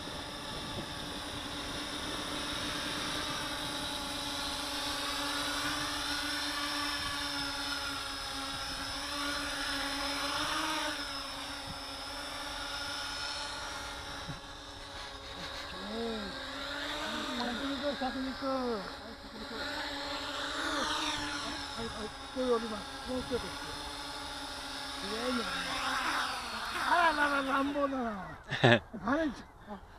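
Small home-built quadcopter's motors and propellers whining in a stack of steady tones that wobble in pitch as the throttle is worked. People laugh and talk over it in the second half.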